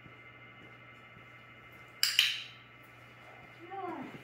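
Two sharp metallic clicks about a fifth of a second apart, each with a brief ringing tail, followed near the end by a short voice falling in pitch.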